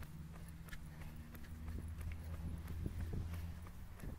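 Running footsteps on an asphalt track, about three footfalls a second, heard from a camera worn by the runner, over a low steady hum.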